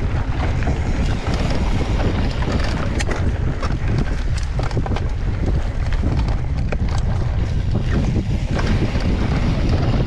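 Ride noise from a mountain bike descending a dirt singletrack: a steady rumble of wind buffeting the bike-mounted camera's microphone and tyres rolling over dirt, with frequent sharp clicks and rattles as the bike goes over bumps.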